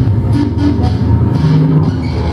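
Live electronic industrial music played on synthesizers and electronics: a dense low drone with short repeating tones above it, and a lower note held briefly near the end.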